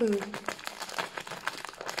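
Plastic bag wrapping a plant's root ball crinkling and crackling as it is handled and cut open with scissors.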